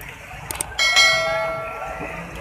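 Two quick mouse-click sound effects, then a bright bell chime that starts suddenly and rings out, fading over about a second: the click-and-bell sound of a subscribe-button animation.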